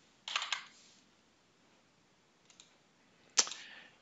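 Clicks from a computer keyboard and mouse: a short cluster of clicks near the start, two faint ticks partway through, and one sharper click near the end.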